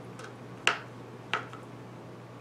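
Two sharp taps of a knife blade striking a plastic cutting board, about two-thirds of a second apart, as cold, firm butter is cut into small cubes. A faint steady low hum sits underneath.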